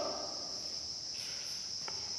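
Faint chalk strokes on a blackboard, heard as a few soft scratchy smears, over a steady high-pitched drone.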